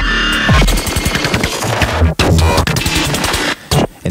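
Eurorack modular synthesizer playing a glitchy electronic drum pattern: fast, blippy hi-hat clicks from a Moffenzeef Muskrat voice with a pitch envelope, crunched by a Doepfer A-189 bit modifier. The sound drops out briefly near the end.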